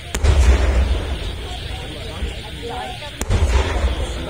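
Two booms from traditional Malay festival cannons (meriam), the first right at the start and the second about three seconds later. Each is a sharp crack followed by about a second of rolling low rumble.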